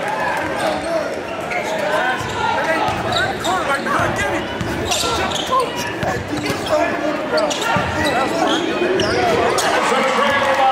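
Crowd chatter and shouts echoing in a gymnasium, with a basketball bouncing on a hardwood court and a few sharp knocks.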